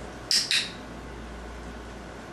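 A training clicker clicked twice in quick succession, two sharp clicks a quarter second apart, marking the puppy's correct behaviour for a treat.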